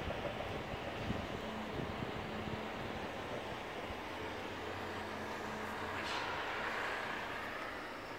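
Steady outdoor city background from high up: a distant traffic hum with a faint low drone, swelling briefly about six seconds in.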